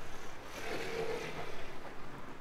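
A motor vehicle passing close by, its sound swelling and fading over about a second.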